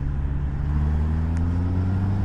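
Motorcycle engine running steadily while riding, a low even hum.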